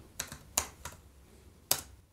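Computer keyboard keys being typed: three light key clicks, then one louder key press near the end as the short command is entered.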